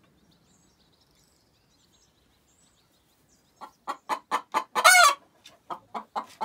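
A hen clucking: quiet at first, then from about halfway a run of short clucks, with one louder, longer call that rises and falls in pitch just before the end.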